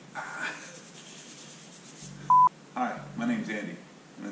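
A single short, loud electronic beep of one steady pitch, about two seconds in, set between brief snatches of a man's speech.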